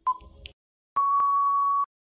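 Quiz countdown timer beeps: one last short tick-beep, then about a second in a longer steady beep lasting nearly a second that signals time is up.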